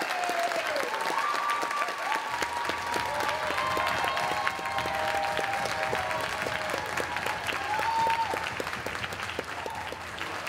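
Audience applauding, dense steady clapping with a few voices calling out over it; it thins a little near the end.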